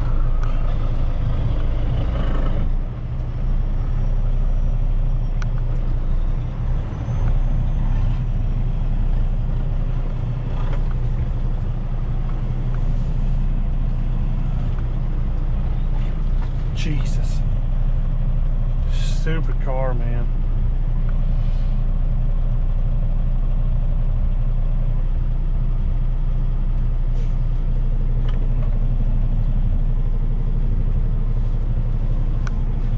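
Heavy-duty tow truck's diesel engine idling steadily, heard inside the cab. A few short hissing sounds and a brief wavering squeal come a little past halfway.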